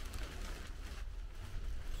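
Quiet room tone: a low steady hum with a faint hiss.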